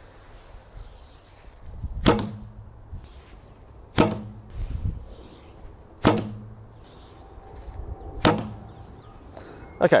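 A 35-pound Mandarin Duck Phantom recurve bow shot four times, about two seconds apart. Each release gives a sharp snap of the string, followed by a short low hum as the bow settles.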